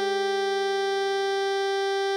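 Synthesized alto saxophone holding one long, steady note (written E5, sounding concert G) over a sustained A-flat major chord on a keyboard, which slowly fades.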